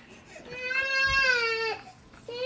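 A baby crying: one long wail that starts about half a second in, holds a steady pitch and drops away at the end.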